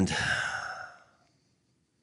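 A man's long, breathy sigh that trails off over about a second after a spoken word.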